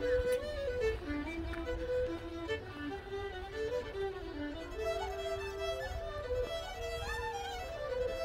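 Background music: a slow fiddle melody moving in held, stepwise notes over a low steady rumble.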